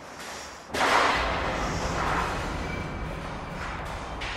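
A sudden clattering crash about a second in, echoing down a deep stone well shaft and ringing on in a long tail of reverberation that slowly fades.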